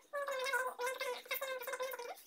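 A woman talking, her voice sounding unusually high and thin.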